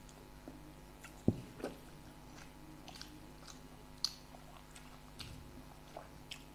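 Chewing and biting of samosas, heard as soft scattered mouth clicks and crunches. The loudest sound is a single thump about a second in.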